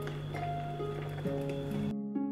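Instrumental background music of held notes that change about every half second. Faint clicks of a wire whisk against a glass bowl sound underneath.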